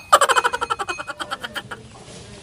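A fast rattling trill, about a dozen pulses a second, that starts suddenly and fades away over nearly two seconds: a comic sound effect over a scene change.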